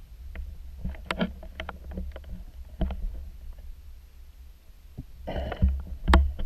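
Water heard through an underwater camera housing: a low steady rumble with scattered sharp clicks and knocks, then a brief burst of splashing and sloshing near the end as the camera comes up at the surface.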